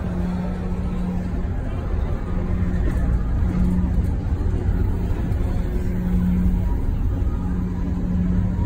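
Tomorrowland Transit Authority PeopleMover ride car running along its track, heard on board: a steady low rumble with a hum that comes and goes every second or two. The car is driven by linear induction motors in the track.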